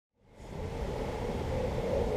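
Steady outdoor background noise with a low rumble, fading in from silence over the first half second.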